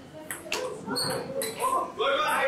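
Table tennis rally: a celluloid ball clicking off bats and the table, several sharp knocks about half a second apart, with voices in the hall.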